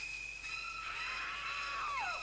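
A long, high scream that joins a steady high eerie tone about half a second in; the scream's pitch falls away near the end.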